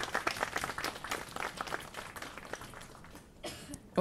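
An audience applauding. The clapping thins out and dies away about three seconds in.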